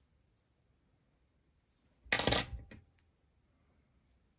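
Steel scissors set down on a hard tabletop: one short metallic clatter about two seconds in, with a brief ring.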